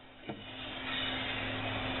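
Aluminium antenna tubing being handled and slid on a table: a light tap, then a steady rubbing, scraping noise of metal tube sliding.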